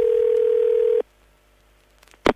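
Telephone ringback tone heard over the line: a single steady low tone that cuts off abruptly about a second in, leaving near silence. It is the ring of an unanswered call to an office phone.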